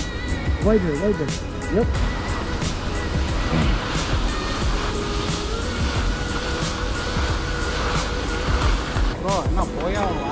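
Skis sliding and scraping over artificial snow on a downhill run: a steady rushing noise that swells in the middle. Background music and voices sit behind it.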